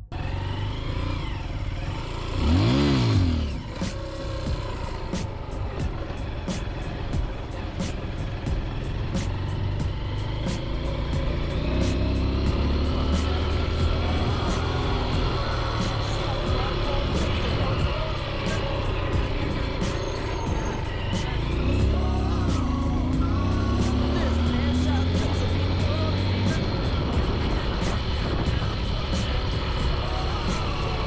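Small trail motorcycle's engine running as it rides along a dirt track, its revs rising and falling, with a loud rev about three seconds in. Wind buffets the helmet-mounted microphone, with a fast steady clicking throughout.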